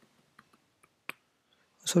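Computer keyboard keys being typed: a handful of sparse, light keystroke clicks, the sharpest about a second in.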